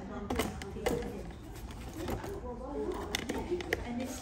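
Background chatter of several people talking, not close to the microphone, with a few sharp clicks, several of them close together near the end.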